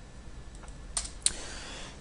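Keystrokes on a computer keyboard: a few faint taps, then two sharper clicks about a second in, a quarter second apart.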